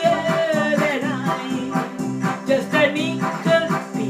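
A pop tune played on an electronic keyboard over a steady backing beat, with a woman singing the melody.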